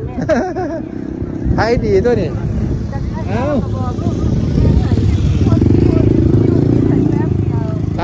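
A small motorcycle engine running close by, getting louder about halfway through, under people talking.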